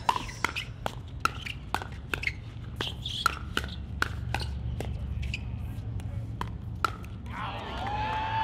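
Pickleball paddles hitting a plastic pickleball back and forth in a fast volley exchange at the net, a sharp pop every half second or so. A voice cries out near the end as the rally stops.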